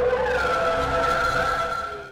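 A loud synthesised intro sting: a low rumble under a steady high tone that glides in and then holds, cutting off suddenly at the end.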